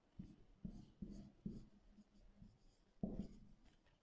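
Faint strokes of a marker pen writing on a whiteboard: a few short scratches in the first second and a half, and another about three seconds in.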